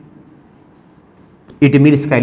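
Marker pen writing on a whiteboard, a faint scratching of the tip across the board, with a man's voice coming in near the end.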